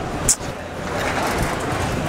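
A steady rush of street traffic noise, with one brief hiss about a quarter second in.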